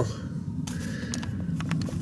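A few faint clicks and light rustling from handling the camera, over a low steady background hum.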